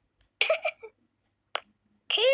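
A brief vocal sound from a person, about half a second long, a little way in, followed near the end by a single sharp click.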